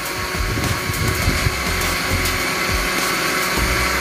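Electric blender motor running steadily, blending a jar of orange, pineapple and lemon juice.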